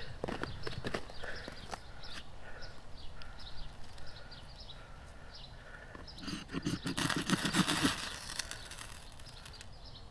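The spine of a Cold Steel bowie knife scraped hard down a ferro rod in a quick run of rasping strokes from about six to eight seconds in, showering sparks onto tinder that does not quite catch. A few lighter knocks and scrapes of the knife come in the first second.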